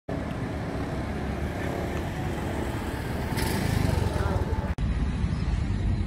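Roadside street noise: a steady low traffic rumble with faint voices in it, and a brief louder hiss about three and a half seconds in. The sound cuts off suddenly near the end and gives way to a duller outdoor rumble.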